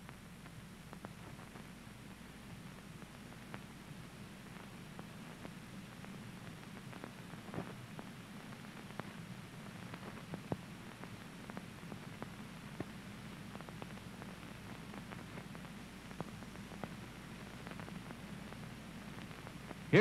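Steady low hum and hiss of an old film soundtrack between narration, with faint scattered clicks.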